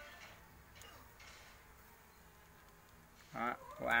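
Quiet room tone for about three seconds, then a man's voice near the end.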